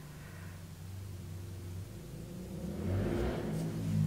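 Car exhaust note: a low, steady engine rumble that grows louder over the last second or so.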